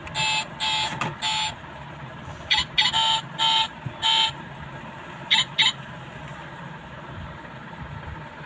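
Built-in electronic sound unit of a Che-Zhi die-cast model car playing short horn-like beeps, about ten in all, in three quick groups.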